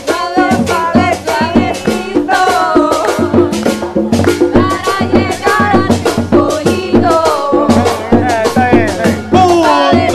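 A live tropical dance band playing with women singing over congas and percussion, in a steady beat.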